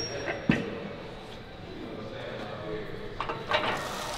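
A Smith machine's barbell and rack making metal noises as the bar is taken in hand: a short knock about half a second in, then faint clicks near the end, over quiet gym room tone.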